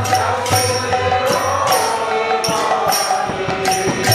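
Devotional bhajan singing: a man's voice sings a gliding melody over a steady low drone. Ringing metal strikes keep the rhythm, about two a second.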